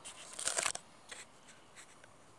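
Close handling noise from a handheld camera: a quick burst of rustling and clicking in the first second, then a few single clicks.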